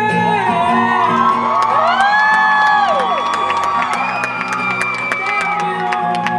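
Acoustic guitar strummed under a man's held sung notes, with audience members whooping and cheering over the music; the whoops rise and fall in pitch in the first half, and a high whistle is held briefly near the middle.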